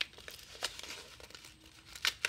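Paper envelope crinkling as hands work its sealed flap open, with a few short, sharp paper crackles.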